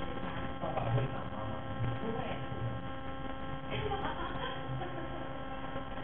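Steady electrical hum made of a stack of even, unchanging tones.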